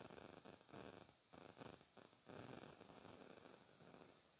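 Sewing machine running faintly in short stop-start spurts as it stitches a seam through the fabric.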